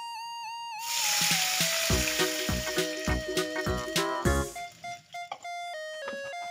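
Water poured into a pan of hot oil and fried garlic, bursting into a loud hissing sizzle about a second in that dies down over the next few seconds, over background music with a beat.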